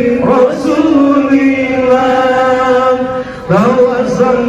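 A group of voices, children among them, chanting together in long held notes. There is a short pause near the end before the next line starts on a rising note.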